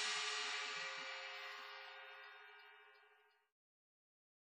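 The last chord of a rock song ringing out and fading away, a couple of steady tones held as it dies, then cut off to silence about three and a half seconds in.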